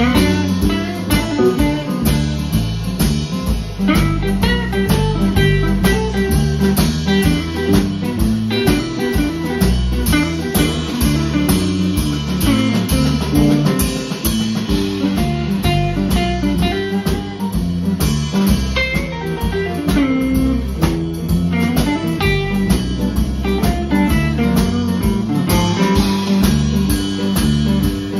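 Live band playing a blues-rock groove on two electric guitars (one a hollow-body), electric bass and drum kit, with steady drumbeats under the guitars.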